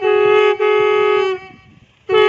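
Several conch shells blown together on one steady pitch, sounding two held notes that stop about a second and a third in, followed by a brief pause.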